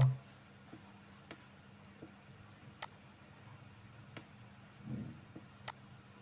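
Faint, sharp mouse clicks, spaced irregularly about one a second, over a low steady electrical hum; two of the clicks, near the middle and near the end, are louder. A brief soft low sound comes about five seconds in.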